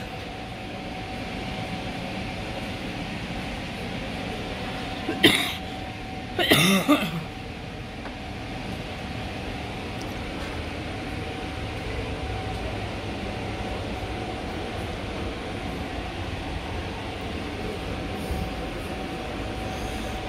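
Steady indoor hum, like a building's ventilation, with a faint steady tone, broken about five seconds in by a sharp cough and a second, longer cough just after.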